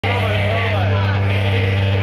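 A loud, steady low drone from the band's amplified gear, one pitch with its overtones, with people's voices over it.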